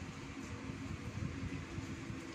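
Wind blowing at an open window in a rainstorm: a steady hiss with uneven low rumbling gusts, over a faint steady hum.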